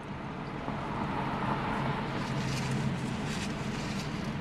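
Steady low hum inside a car's cabin, with faint chewing as a man eats a sandwich.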